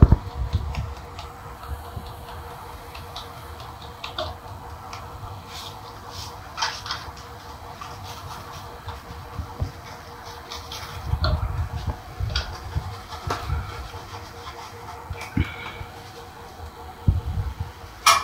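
Flour being sifted through a stainless steel mesh sieve: fingers rubbing the flour through the mesh and the sieve shaken and knocked against the plate, giving soft rustling and dull knocks. The handling is heaviest about eleven seconds in and again near the end, over a faint steady hum.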